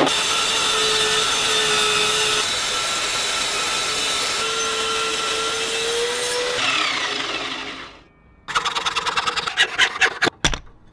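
Table saw blade running and cutting through wood for about eight seconds, a steady whine over the noise of the cut, fading out near the end. After a short pause, a hacksaw cuts through wood in rapid back-and-forth strokes.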